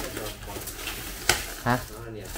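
Plastic stretch wrap crinkling and rustling as it is pulled off a piano, with one sharp snap of the plastic just past a second in.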